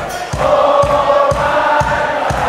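A concert crowd singing along together in long held notes over a band's steady kick-drum beat, about two beats a second.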